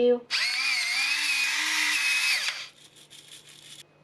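Electric pepper grinder running for about two seconds, a small motor's wavering whine over the crunch of peppercorns being ground, then stopping, with a second of fainter crackle after.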